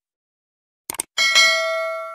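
Subscribe-button sound effect: a quick double mouse click about a second in, then a notification-bell chime struck twice in quick succession and left ringing.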